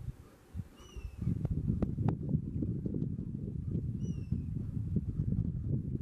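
A bird gives two short, falling chirps, about a second in and again about four seconds in, over a rough, irregular low rumble that swells about a second in and stays loud.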